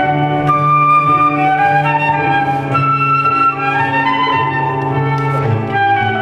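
Transverse flute playing a slow melody of held notes, over a steady low accompaniment.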